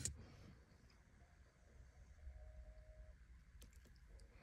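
Near silence: room tone, with a faint held tone in the middle and a few faint clicks near the end.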